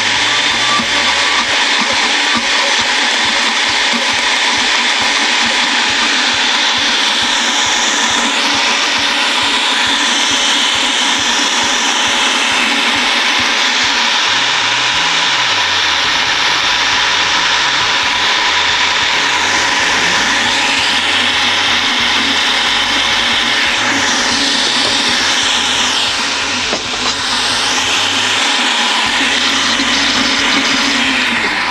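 Countertop blender running continuously at high speed, puréeing a thick green herb sauce; a steady loud whir with a brief dip near the end.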